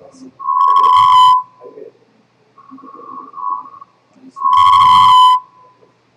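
A repeating electronic beep: a loud, steady one-second tone about every four seconds, twice, with a softer, slightly higher tone sounding between the beeps.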